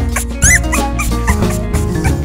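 Background music with a steady drum beat, over which a newborn American Bully puppy gives a short, high whimper about half a second in.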